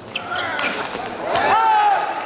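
A few sharp clicks of a table tennis ball off bats and table in a rally, then a loud, high-pitched shout about a second and a half in as the point ends.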